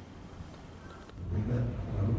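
Faint room tone with a single soft tick, then about a second in an abrupt cut to a louder, steady low rumble.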